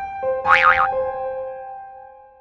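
Short end-card jingle: held bell-like tones with a brief warbling sound effect about half a second in, the tones then fading out.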